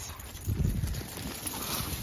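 A pack of dogs galloping up from behind and past, a rapid irregular patter of many paws on a dirt and gravel path.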